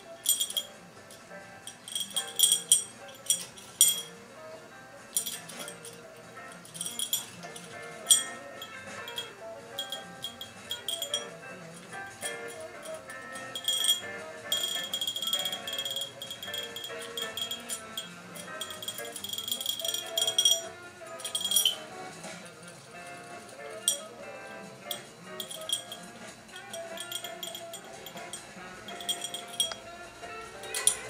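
A small bell rung by a dog, jingling in repeated short bursts with one longer stretch of continuous ringing about halfway through, over background music.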